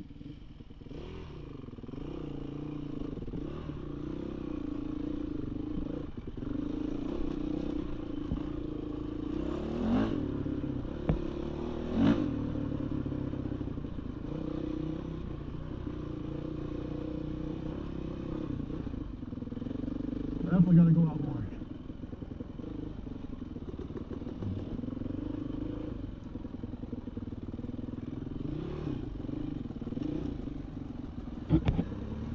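Dirt bike engine running while riding a rough trail, its pitch rising and falling with the throttle. There are two sharp knocks around ten and twelve seconds in, and a brief louder sound about two-thirds of the way through.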